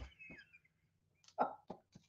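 Mostly quiet, with a few brief soft sounds from a man: a faint breathy vocal sound trailing off at the start, a short murmur or chuckle about one and a half seconds in, and a few small clicks.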